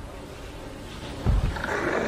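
A deep creature roar over heavy low rumbling in a battle soundtrack, swelling about a second and a half in.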